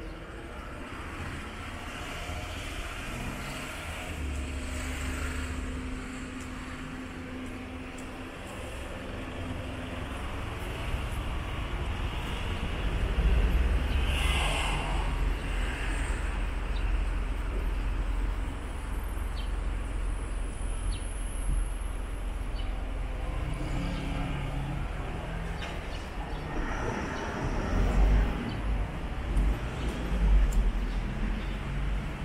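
City street ambience with car traffic going by and a steady low rumble. One vehicle passes more loudly about halfway through.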